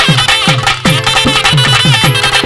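Live Tamil folk band music, with no singing: a clarinet plays a wavering, ornamented melody over a fast drum beat. The drum strokes drop in pitch after each hit, about four a second.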